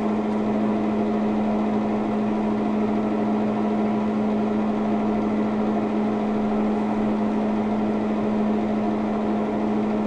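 Steady machine hum, holding one strong low drone with fainter steady tones above it, unchanging in pitch and level throughout.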